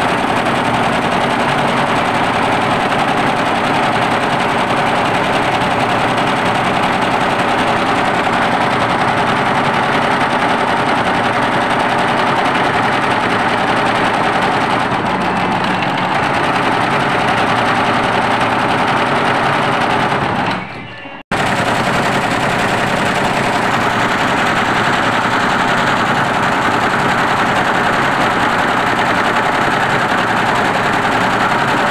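Multi-needle computerized embroidery machine stitching, a fast, steady rattle of the needle bar. The sound fades and cuts out for a moment about two-thirds of the way through, then carries on as before.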